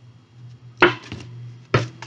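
A deck of tarot cards being shuffled by hand, with two sharp knocks or slaps of the cards about a second apart and lighter riffling between them.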